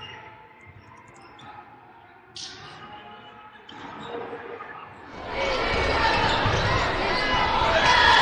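Basketball game sound from an arena: a ball bouncing on the hardwood court over quiet hall ambience, then loud crowd noise coming in suddenly about five seconds in.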